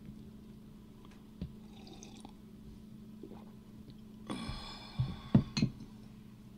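A man drinking from a mug of coffee: quiet sips, then a little after four seconds in a held vocal sound, followed by several sharp knocks, the loudest event about five seconds in.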